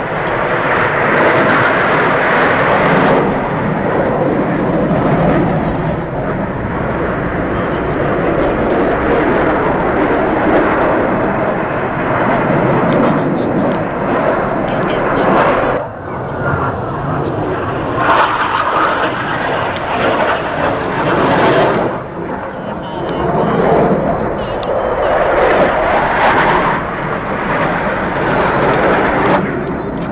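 Jet roar from Blue Angels F/A-18 Hornets flying overhead, swelling and fading several times as the jets pass. It is loudest near the start, about two-thirds through and near the end, with a brief dip about halfway.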